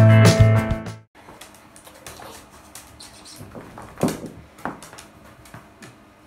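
A short instrumental intro jingle that cuts off about a second in, followed by faint rustling and scrubbing from a towel being rubbed over a wet dog in a bathtub, with a few soft knocks, the loudest about four seconds in.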